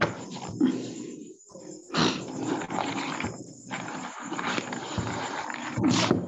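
Rough, crackly background noise coming through an open video-call microphone, cutting out abruptly for moments a couple of times.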